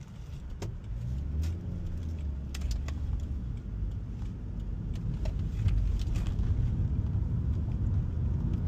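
Road and tyre rumble heard inside a Toyota Prius cabin, growing steadily louder as the car pulls away and gathers speed, with a few scattered light clicks and rattles.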